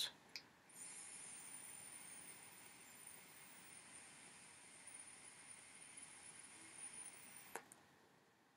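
A long direct-lung drag on a single-coil Trident clone rebuildable dripper: a faint, steady hiss of air and vapour through the airy deck, with a thin high whine over it. It cuts off suddenly about seven and a half seconds in.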